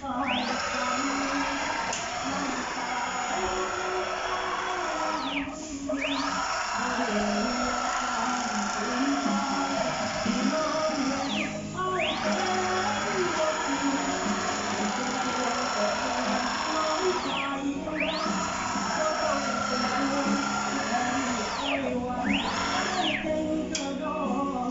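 CNC router axis driven by its motor through a ball screw, traversing back and forth five times: each run is a high whine that rises quickly in pitch as the axis speeds up, holds steady for about five seconds, then falls away as it stops. The machine is being run to test the motor's alignment with the ball screw.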